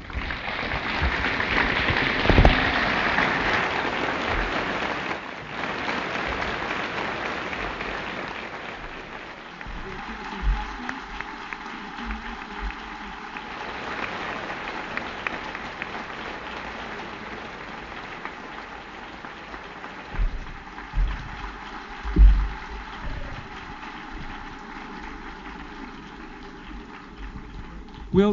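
Audience applauding at the end of a lecture: the clapping starts suddenly and is loudest for the first few seconds, then thins out but keeps going. A few low thumps stand out near the middle and toward the end.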